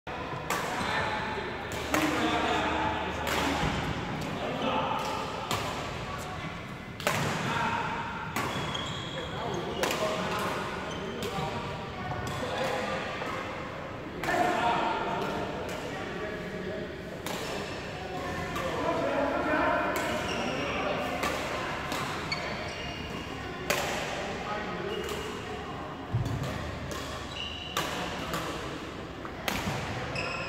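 Badminton rackets striking shuttlecocks on several courts: sharp, irregular hits, roughly one a second, echoing in a large sports hall, with indistinct voices of players underneath.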